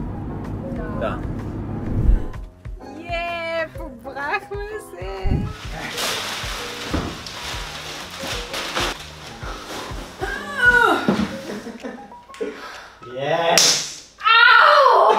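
A low car-cabin rumble for the first two seconds, then, over background music, voices and the rustle of plastic shopping bags being carried in and set down.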